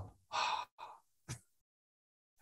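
A man's audible breath, a short sighing exhale, followed by two much fainter breath sounds.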